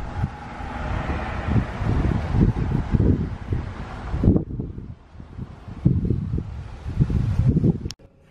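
Wind buffeting a phone microphone outdoors: irregular low rumbling gusts with a hiss over them that drops away about four seconds in.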